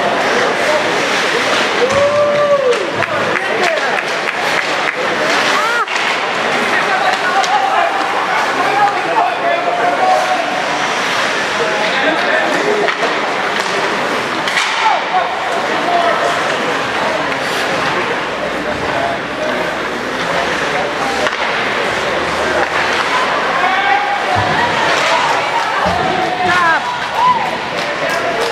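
Ice hockey play heard from the stands of an indoor rink: a steady mix of spectators' chatter and shouts in the echoing hall, broken by scattered sharp knocks of sticks, puck and boards.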